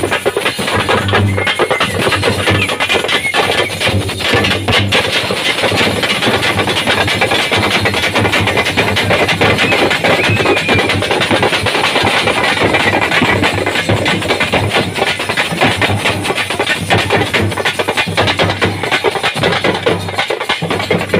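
Frame drums beaten hard and fast with sticks, a dense, unbroken percussion rhythm.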